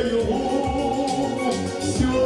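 A man singing a lyrical Russian song into a handheld microphone over an instrumental accompaniment with a steady beat.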